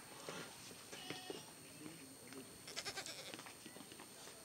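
A wooden rolling pin being worked over dough on a round rolling board, with a quick run of light knocks a little before the end. Faint pitched calls, bleat-like, sound briefly in the background about a second in.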